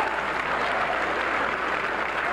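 Audience applauding steadily, a dense, even clatter of many hands clapping.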